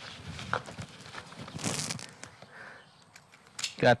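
Nylon straps and pack fabric rustling as a backpack is settled on the back and its waist strap is fastened, with a short burst of rustling about halfway through and a few light clicks after it.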